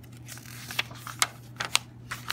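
A paper page of a picture book being turned by hand: a handful of short, sharp paper snaps and crinkles, the loudest a little past the middle.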